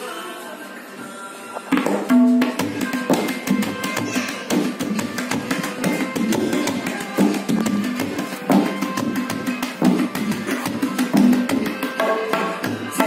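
Tabla pair played by hand, coming in about two seconds in with fast, dense strokes on the treble drum and deep ringing bass strokes on the bass drum, over a softer melodic accompaniment.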